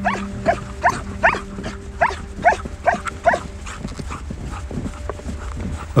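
Sled dogs in harness yelping: a quick run of short, rising yelps, about eight in the first three and a half seconds, then fewer.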